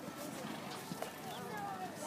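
Hoofbeats of a horse cantering on soft sand footing, with faint voices in the background.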